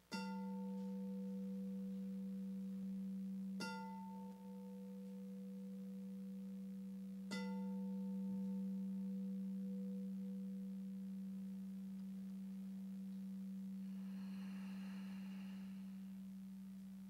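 Singing bowl struck three times, about three and a half seconds apart, each strike ringing on in one long sustained tone with fainter higher overtones.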